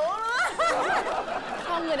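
A man and a woman laughing and chuckling, mixed with talk; a woman starts speaking near the end.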